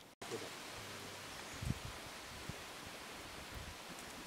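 Steady outdoor background hiss with a few dull low thumps, the loudest about a second and a half in, after a brief dropout right at the start.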